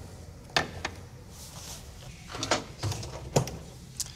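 Ceramic ramekins clinking and knocking as they are set down on a ceramic serving platter: a few sharp clinks, with a brief squeak about halfway through.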